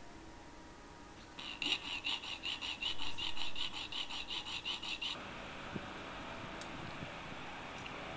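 Small hacksaw cutting through a thin aluminium strip: quick, even rasping strokes, about five a second, starting about a second and a half in and stopping abruptly about five seconds in.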